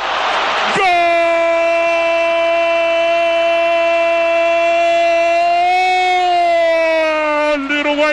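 A radio football commentator's drawn-out goal cry: one long note held for about six or seven seconds, rising slightly near the end before breaking into words, announcing a goal.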